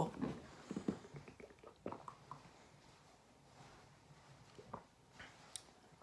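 Faint gulps and swallows of water drunk from a plastic bottle: a scatter of short, soft sounds at irregular moments, with quiet between them.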